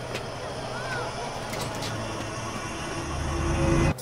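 Outdoor street ambience with a few short high chirps. A low rumble swells up over the last second and cuts off suddenly.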